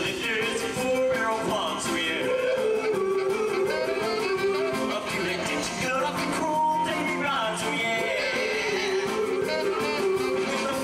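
Band and lead singer performing a 1950s-style song, the voice gliding up and down over a steady accompaniment.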